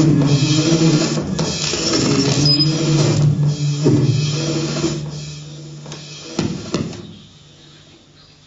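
Live improvised music from double bass, electronics and struck percussion objects: a dense clattering texture over a low sustained drone. The texture thins about five seconds in, two sharp hits follow, and then the sound falls away to a low hush near the end.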